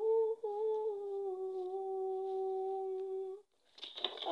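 A woman humming one long, steady note that stops about three and a half seconds in; the humming starts again just before the end.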